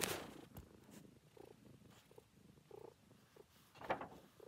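Domestic cat purring faintly right up against the microphone, after a brief rustle as the cat brushes the device at the start.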